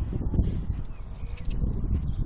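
Horse hoofbeats on a sand arena surface: dull, irregular low knocks with a rumble underneath.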